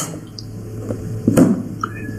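Background of a phone-in call line: a steady low hum and faint hiss, with one short click about halfway through.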